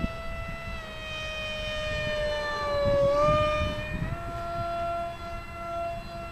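Electric motor and propeller of a foam RC F-15 Eagle model whining steadily in flight, powered by a Grayson Super Mega Jet motor. The pitch sags as the plane comes closest about three seconds in, then steps back up about a second later.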